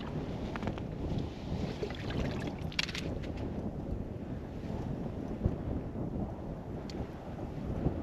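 Wind buffeting the microphone on open ice, a steady low rumble, with a brief scratchy rustle about three seconds in.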